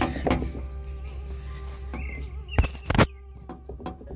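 Water from a sump pump discharge line running into a plastic rain barrel, heard close against the barrel wall, with two sharp knocks about two and a half and three seconds in.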